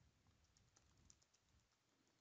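Very faint computer keyboard typing: a quick run of light key clicks as a word is typed.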